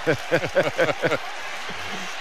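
A man laughing in a quick run of repeated "ha" sounds for about the first second, over steady arena crowd noise, which carries on alone after the laughter stops.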